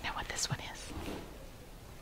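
Quiet, partly whispered speech, with a few short hissy sounds in the first half second.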